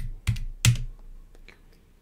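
Keys pressed on a computer keyboard: three sharp keystrokes in the first second, then a few fainter clicks.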